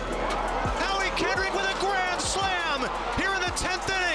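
An excited play-by-play announcer's voice calling the home run over background music.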